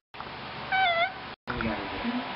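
A single short meow-like call that wavers up and down in pitch, about a second in, set between two abrupt cuts to silence.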